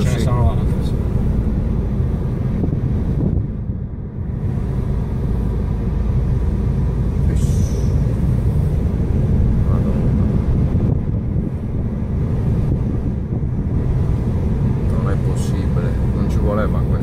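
A car driving along an unpaved dirt road, heard from inside the cabin: steady low engine and tyre noise, dipping briefly about four seconds in.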